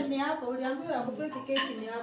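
Metal clinking at a gas hob, with a sharp clink about one and a half seconds in, under voices talking.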